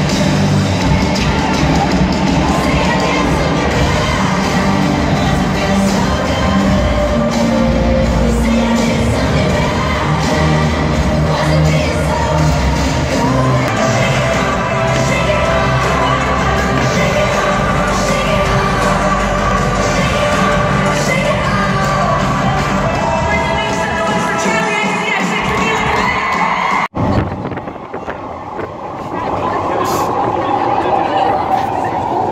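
Live pop concert music over a stadium PA, heard from the stands with the crowd cheering. About three seconds before the end it cuts suddenly to the quieter rumble of a crowded underground train carriage.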